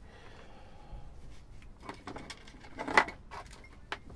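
Hands handling small parts on a wooden workbench: stripped wire, a metal BNC connector and plastic radio casing, with faint clicks and rustles, one louder knock about three seconds in and a sharp click just before the end.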